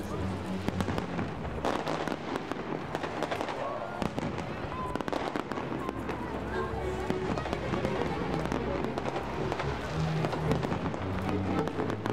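Aerial fireworks bursting and crackling in quick, overlapping succession.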